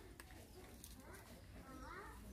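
Puppies whimpering faintly while they eat: short, high whines about a second in and again near the end, with a few sharp clicks.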